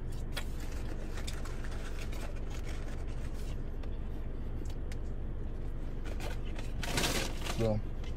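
A steady low drone inside a car cabin, with faint scattered clicks of eating fries. About a second before the end, a short burst of hiss.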